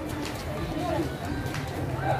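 Crowd chatter: many people talking at once, with several voices overlapping and no single clear speaker.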